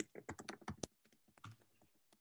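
Typing on a computer keyboard: a quick run of key clicks in the first second, then a few more strokes around halfway.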